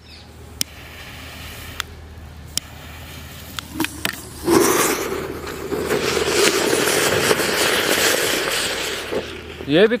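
A small anar (cone fountain firework) is lit with a jet-torch lighter, a low hiss with a few clicks. About four and a half seconds in, the firework bursts into a loud, steady spraying hiss as it burns down inside a hole in cement, then fades near the end.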